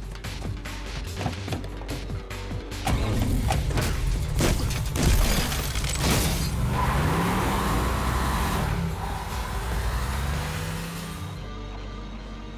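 Action-film soundtrack: a music score under a muscle car's V8 engine. A flurry of sharp knocks and crashes comes in the first few seconds. Then the engine revs up and down over a loud hiss of tyres skidding and spraying dirt, dying away just before the end.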